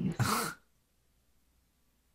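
A short breathy vocal noise from a person, about a third of a second long, just after speech stops, followed by near silence.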